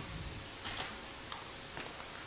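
Quiet room hiss with a few faint, soft clicks and rustles from sheets of paper being picked up off a lectern.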